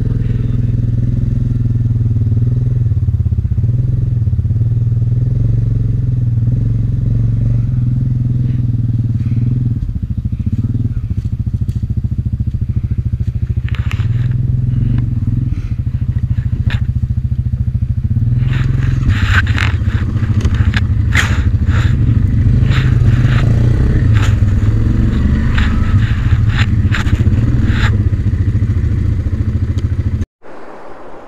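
Yamaha 700 ATV engines running at low speed, a steady low hum. From about halfway through it is joined by a dense run of crackling and snapping from dry leaves and twigs under the tyres as the ATV moves off through the brush.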